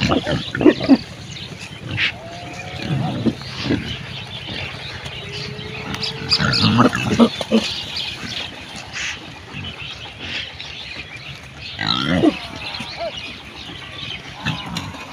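A herd of pigs grunting while they forage, in irregular bunches of short calls with a few longer, held pitched calls among them.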